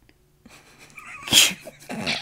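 Stifled laughter breaking out: breathy noise builds, then a sudden loud burst of breath about halfway through and a second one near the end.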